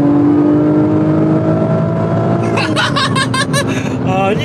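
Heard from inside the cabin, the twin-turbo V6 of a tuned 660 hp Nissan GT-R pulls hard in gear, its note rising slowly under acceleration and easing off about halfway through. In the last second and a half a man laughs loudly over the engine.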